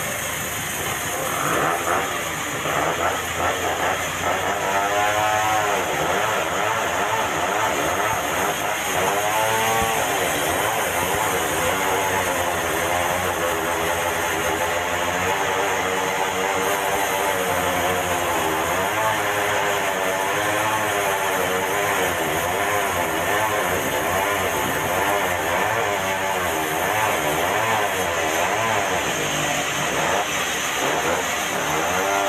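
Band sawmill running and cutting a red meranti log: a steady machine noise whose pitch wavers up and down.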